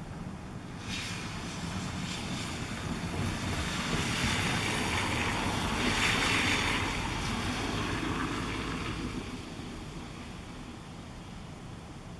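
A passing vehicle: a steady rushing noise swells over a few seconds, peaks about midway, then fades away.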